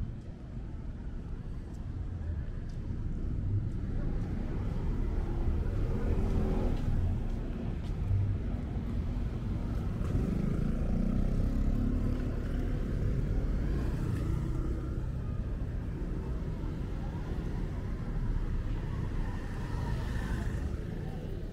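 City street ambience: a steady low traffic rumble, with a car and motor scooters passing at low speed and engine sounds rising about six seconds in and again around ten to twelve seconds.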